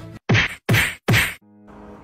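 Three punch sound effects in quick succession, each a short sharp whack, spaced a little under half a second apart.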